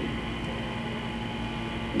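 Steady hum and hiss of room tone, with a few faint constant tones running through it.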